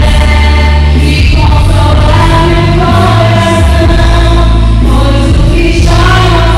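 Two women singing a Christian worship song into microphones, amplified over an instrumental accompaniment with a steady bass line that shifts notes a couple of times.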